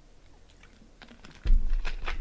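A sudden loud thump close to the microphone about one and a half seconds in, after a few faint clicks. A quick run of sharp clicks and knocks at the desk follows it.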